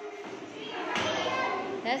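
Young children's voices chattering and murmuring in a hall, swelling about a second in, with a single clear spoken "yes" at the very end.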